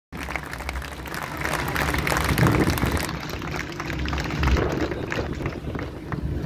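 Audience applause and crowd noise, the clapping dying down after about three seconds.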